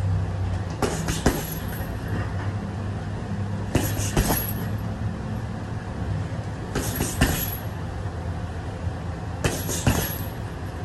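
Boxing gloves punching a hanging wrecking-ball style heavy bag, two punches at a time about every three seconds, four pairs in all, over a steady low hum.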